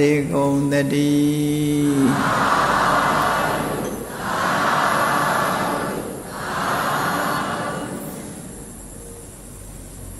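A monk's chanting voice holding a final note, then a gathered audience answering in unison three times, each call about two seconds long and the last one fading: the customary threefold 'sadhu' that closes a Buddhist sermon.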